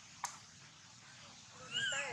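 A baby macaque gives one short cry near the end, its pitch rising and then falling. A single sharp click comes about a quarter second in.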